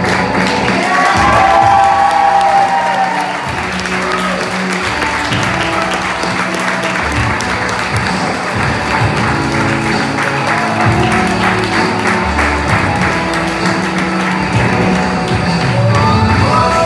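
Music playing, with a crowd clapping and cheering over it; the clapping is thickest in the middle stretch.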